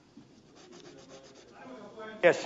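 Faint room noise of a large debating chamber in a pause between speakers, with a low, distant murmur.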